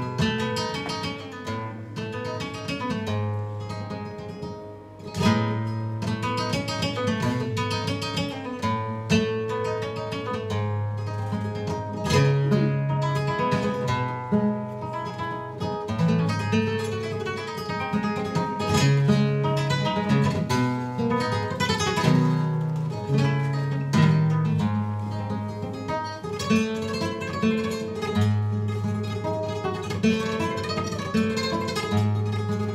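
Solo nylon-string flamenco guitar playing: a plucked melody over low bass notes, with sharp strummed chords now and then, one of them right after a brief drop in level about five seconds in.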